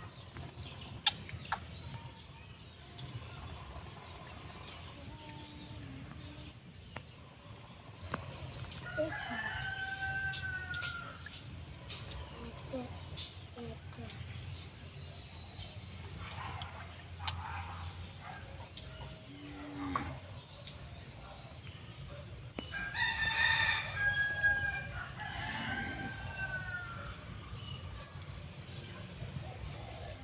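Rooster crowing twice, about eight seconds in and again from about 23 seconds in, over a steady, rapidly pulsing high insect chirping, with scattered sharp clicks.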